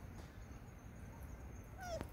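A macaque gives one short, high call near the end that slides down in pitch, over faint low background noise.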